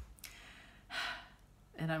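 A woman's audible breath, a sigh, about a second in as she gets choked up, with a short click at the start and her speech resuming just before the end.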